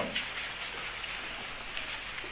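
Steady, even hiss of room tone and recording noise, with no distinct events, during a pause in a spoken talk.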